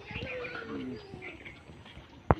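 Birds calling: a low call held for about a second, with short high chirps over it.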